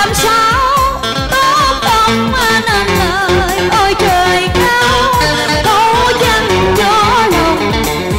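A woman singing a Vietnamese cải lương song into a microphone, the melody wavering with vibrato, accompanied by electric guitar and an electronic organ keeping a steady beat.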